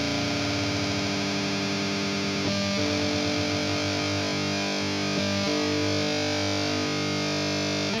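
Electric guitar through a heavily distorted amp, two strings ringing together and held while one is retuned, with the pitch stepping slightly about two and a half seconds in and again about five and a half seconds in. The wobble (beating) between the two notes is the sign that they are not yet in tune with each other.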